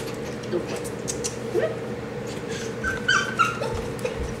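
A small puppy whimpering, with a short high-pitched whine about three seconds in.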